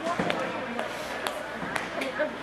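A few sharp knocks of hockey sticks and puck on the ice, over spectators talking.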